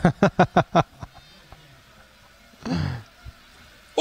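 A man laughing in a quick run of short 'ha's at the start. Later there is a lull and one brief, falling voice sound.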